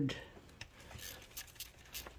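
A few faint, irregular metallic clicks from a socket and extension being worked on a timing cover bolt as it is loosened.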